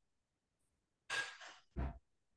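A person breathing out audibly into a computer microphone, heard as two short breathy puffs about a second in, the second with a low thump of air hitting the mic.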